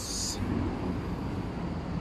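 Steady low background rumble of road traffic.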